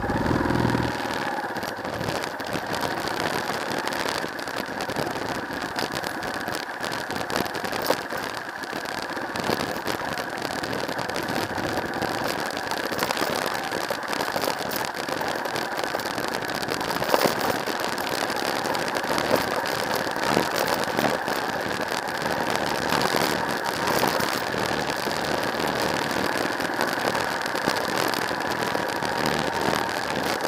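Yamaha XT250's air-cooled single-cylinder four-stroke engine running steadily as the bike rides along a dirt road, with frequent clicks and rattles over the top.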